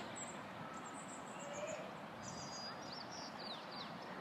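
Birds chirping in short, high twitters, with a few quick downward-sweeping notes near the end, over steady low background noise.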